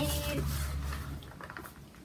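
A low rumble of movement, then faint pencil scratches on paper as a score is written down.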